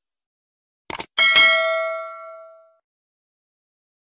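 A quick double mouse click, then a small bell dinging twice in quick succession and ringing out for about a second and a half: the sound effect of a subscribe button being clicked and the notification bell ringing.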